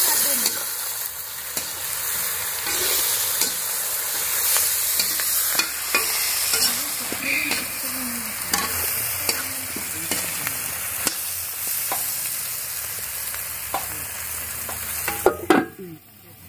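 Chicken curry frying in oil in a black wok, sizzling steadily while a spatula stirs and scrapes the pieces, with frequent small clicks of the spatula on the pan. Near the end there is a louder metal clatter as a lid goes on the wok, and the sizzle turns much quieter.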